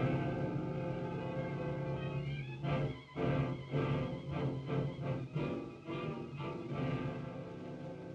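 Orchestral suspense music from a 1941 film score: sustained chords, with a run of short accented notes about three to seven seconds in.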